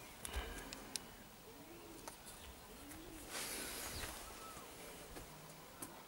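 A pigeon cooing faintly: a low call that rises and falls, repeated every second or so. There are a few small clicks near the start and a brief hiss of noise around the middle.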